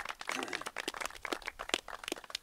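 A small group applauding: many quick, irregular hand claps.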